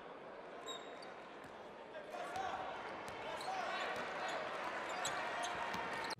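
Basketball arena ambience: faint crowd noise and voices that grow louder about two seconds in, with scattered ball bounces and knocks on the court.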